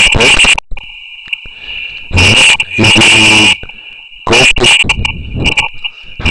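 A man's voice in three loud, distorted bursts of speech that the transcript does not catch, with a steady high-pitched electrical whine underneath in the pauses.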